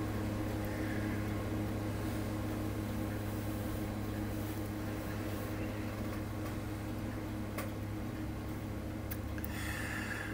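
A steady low hum, like a fan or electrical equipment running in a small room, with a couple of faint clicks late on.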